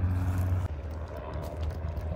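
Low steady hum of a vehicle engine on the street, its tone shifting about two-thirds of a second in.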